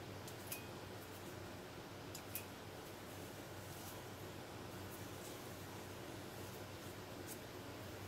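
Small hand pruning snips clipping plant stems and leaves: a few faint, sharp clicks, the clearest about half a second and two and a half seconds in, over a low steady hum.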